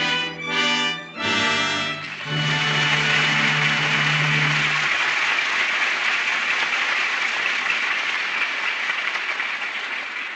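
A studio orchestra plays a short act-ending music cue that settles on a held chord and stops about five seconds in. From about two seconds in, a studio audience applauds steadily, fading slowly.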